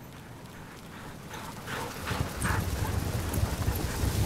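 An eight-dog sled team running toward and past the listener on a packed snow trail: the dogs' footfalls and breathing, growing louder as they close in. From about halfway a low rushing noise builds as the sled draws level.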